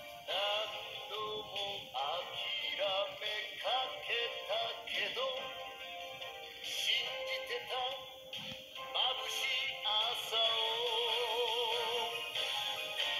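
Anime ending theme song sung in Japanese with instrumental backing; near the end the singer holds notes with a wavering vibrato. It plays through a television speaker and is picked up in the room.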